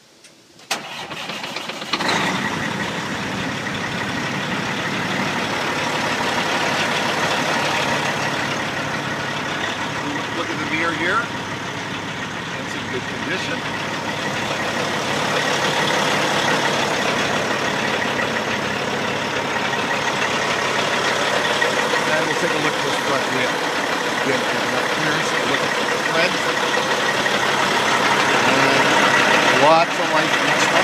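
Caterpillar diesel engine of a 2006 Freightliner FLD120 dump truck starting about a second in, then idling steadily.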